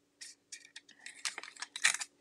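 A run of short clicks and rustles from craft supplies being handled on a desk, the loudest a cluster near the end.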